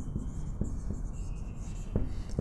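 Whiteboard marker writing on a whiteboard: the felt nib squeaking and scratching faintly as a word is written, with a few light ticks as the pen meets the board.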